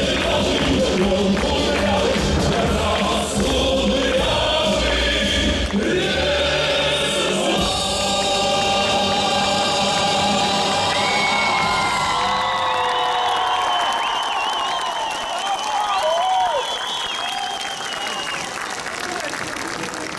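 A male singer performing a song live over a band. About eight seconds in the bass and beat drop out and he holds long final notes with vibrato, over crowd noise.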